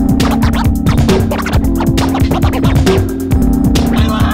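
Loud electronic dance music from a DJ set: a fast, busy drum pattern over steady bass notes, with short sliding sounds laid over it.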